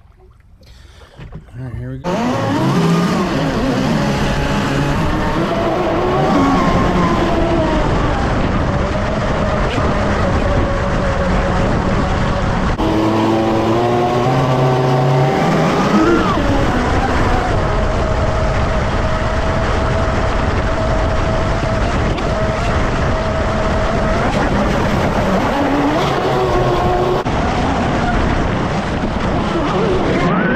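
Pro Boat Blackjack 42 RC catamaran's brushless motor whining at speed over rushing water and spray, heard from on board. The whine starts about two seconds in, then rises and falls with the throttle and holds steady for a long stretch in the middle.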